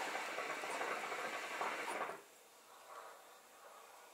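A long draw on a hookah: a steady hiss of air pulled through the hose and the water base, lasting about two seconds before it stops.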